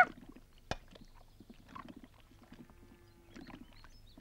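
A quiet pause holding a single sharp click under a second in, followed by a few faint small ticks and knocks.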